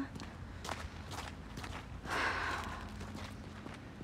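Footsteps on a snow-dusted path, recorded from the walker's own handheld phone, with a breathy exhale about two seconds in.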